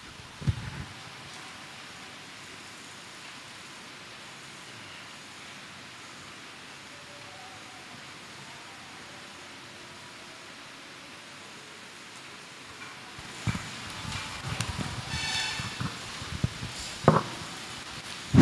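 Faint steady hiss of a quiet room picked up by an open microphone, with a thump about half a second in. Soft rustling and a few handling clicks come near the end as a handheld microphone is picked up.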